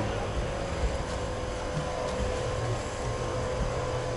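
Steady background noise: a low, uneven rumble under a faint continuous hum, with no distinct event.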